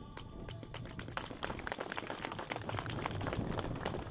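Crowd applauding outdoors: many irregular claps that build up louder through the pause.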